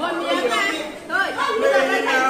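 Speech only: a group of people talking.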